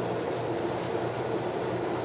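Steady background noise: a low hum with a hiss over it, even throughout, with no distinct clicks or knocks.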